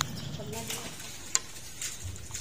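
Steady hiss of water running from a garden hose into a steel basin, with a single sharp click about a second and a half in.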